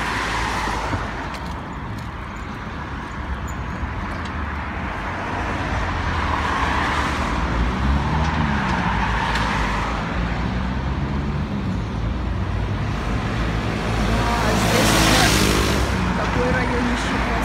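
Road traffic on a multi-lane city street: a steady rumble of cars and trucks driving past, swelling as vehicles pass, with one engine's pitch rising and falling in the middle and a close pass loudest near the end.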